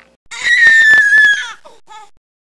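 A loud, high-pitched squeal about a second long that slides slightly down in pitch, followed by a few short squeaks: a sound effect played with the end card.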